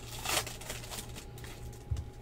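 Foil trading-card pack wrapper crinkling as it is pulled open, a short sharp rustle about half a second in, then lighter rustling of cards being handled. A soft low thump just before the end, over a steady low hum.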